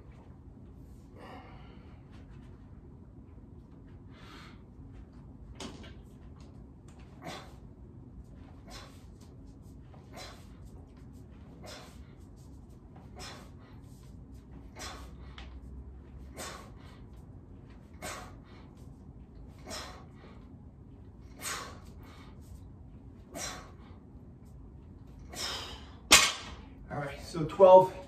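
A man's sharp exhalations, one with each rep of a set of barbell bent-over rows: about a dozen short, hissy breaths roughly every second and a half. Near the end comes a single sharp knock, the loaded barbell being set down on the floor.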